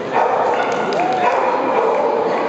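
Dogs barking and yipping over a steady background of many people talking.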